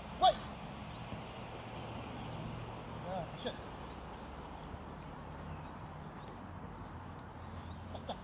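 Football being dribbled on artificial turf, the ball tapped by the foot in light, irregular knocks over a low steady background hum. A short, sharp high-pitched call sounds about a quarter second in and is the loudest thing, with two fainter calls about three seconds in.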